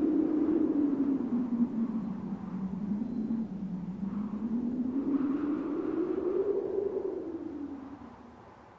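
A single low wavering tone that sinks slowly and rises again, then fades out near the end: a sustained drone left ringing after the song's final hits.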